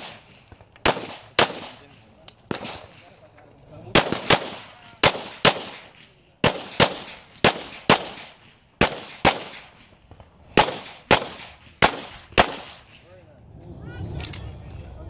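Pistol shots fired in quick pairs about half a second apart, around eighteen in all, each sharp crack trailing off in a short echo: double taps on each target during a USPSA practical shooting stage.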